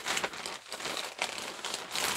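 Packaging crinkling and rustling as it is rummaged through by hand, an irregular run of crackles.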